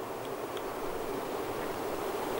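A flying insect buzzing steadily close by, with a faint outdoor hiss.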